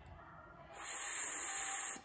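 A woman's voice holding a long, unvoiced "fff" hiss for about a second, starting about halfway in and cutting off sharply: the first sound of "fear" said on its own in a phonics demonstration.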